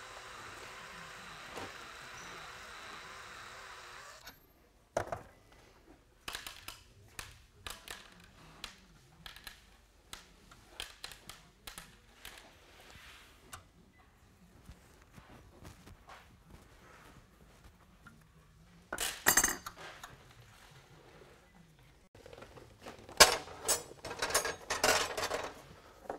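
Cordless drill spinning a Uniburr chamfer bit against the cut end of a steel threaded rod for about four seconds, then stopping. A run of small metal clicks and clinks follows as the rod end is handled and a nut is worked onto the threads by hand, with louder metallic clattering twice near the end.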